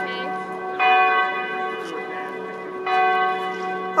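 Church bell ringing, struck twice about two seconds apart, each stroke ringing on and slowly fading.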